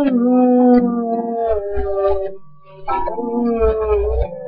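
A man's wordless sung wail: long held notes that slide in pitch, with a brief break about two and a half seconds in, over strummed acoustic guitar.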